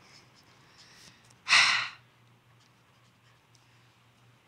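A person's sigh, a single breathy exhale close to the microphone lasting about half a second, about one and a half seconds in.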